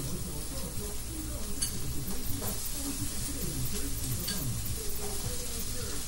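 A frying pan sizzling steadily on high heat, with a few light clicks of a utensil against it; the sizzle is the sound of a properly hot pan.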